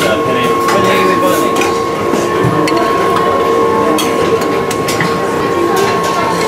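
Buffet-counter clatter: sharp clinks of serving ladles against steel pans and dishes over a busy kitchen background, with a steady high whine of two held tones.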